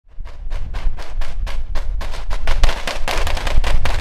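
British Army SA80 rifles firing blank rounds through blank-firing adaptors: a rapid run of shots about four a second, coming thicker and overlapping in the second half.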